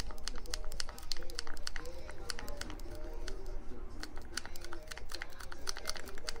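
Thin plastic serum ampoule crinkling and clicking as it is squeezed out into a plastic hair-dye applicator bottle: a run of small, irregular clicks.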